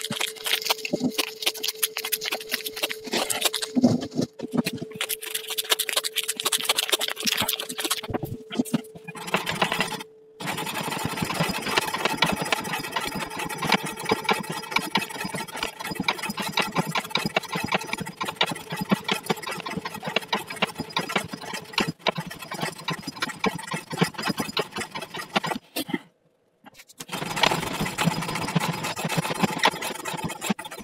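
A CPM 15V knife blade on a weighted, hand-lever rope-cutting test rig, slicing through rope in fast, repeated strokes that give a dense, rhythmic rasping clatter. The strokes briefly stop twice, about ten seconds in and again near the end. A steady hum runs through the first third.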